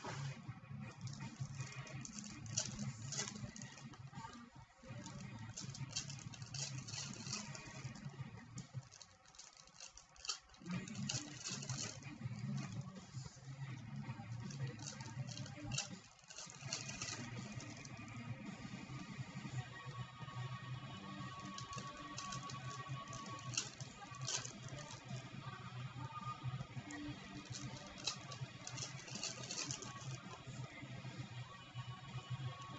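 Foil trading-card pack wrappers crinkling and cards rustling as packs are torn open and handled, a dense run of small crackles, over quiet background music.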